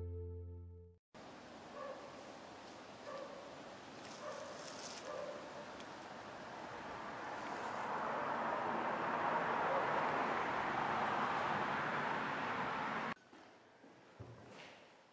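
Outdoor background noise with a few short, distant dog barks in the first five seconds. A steady rushing noise swells toward the middle and cuts off suddenly near the end.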